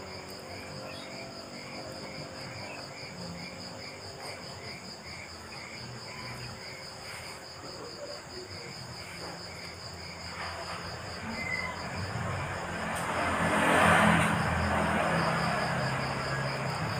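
Crickets chirping steadily: a fast, even high trill with a lower chirp repeating about twice a second. Late on, a broad rush of noise swells up, loudest about fourteen seconds in, and stays louder to the end.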